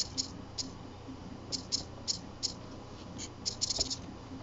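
Hands fiddling with jumper wires and their connectors: short, light scratchy clicks every few tenths of a second, coming in a quick cluster near the end.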